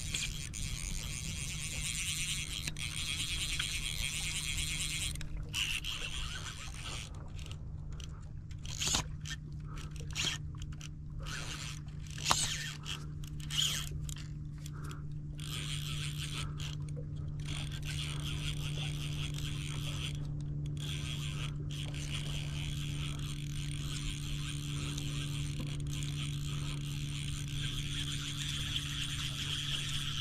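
A fly reel being worked while a hooked redfish pulls against a bent fly rod, with a few sharp clicks around the middle, over a steady low hum and hiss.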